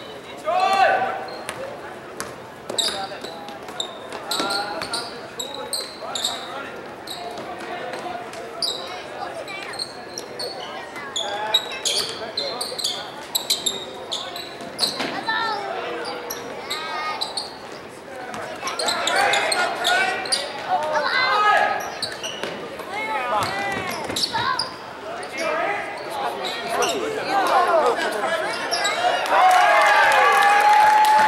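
A basketball being dribbled and bounced on a hardwood gym floor, with sneakers squeaking, in a large echoing gym. Players and spectators shout and call out over it, more loudly from about two-thirds of the way in.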